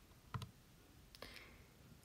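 Near silence broken by two faint short clicks, one about a third of a second in and another just after a second.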